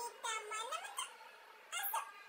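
Domestic cat meowing: a drawn-out meow in the first second that dips in pitch and rises again, then a short, sharper meow near the end.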